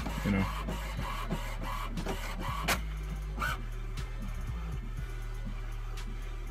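HP Envy 4500 inkjet printer printing its alignment page: a steady motor hum with short whirring tones and clicks as the print carriage moves and the sheet feeds out.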